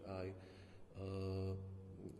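A man's voice: a short spoken word, then about a second in a held, even-pitched hesitation sound ("eee") lasting about half a second as he searches for the next words.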